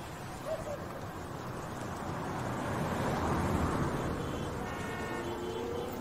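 Road traffic: a vehicle's noise swells and fades in the middle, then a car horn sounds near the end and is still going as it ends.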